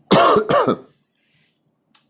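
A man's short vocal sound in two quick parts, under a second long, near the start.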